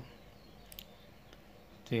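A few faint, light clicks as hands handle a phone circuit board clamped in a metal PCB holder, over quiet room tone.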